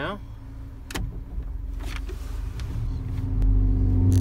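Engine of a 1988 Dodge Raider heard from inside the cab as the truck pulls away, with a single click about a second in and the engine growing louder from about three seconds in.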